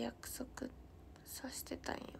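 A woman speaking softly under her breath, a few short half-whispered words.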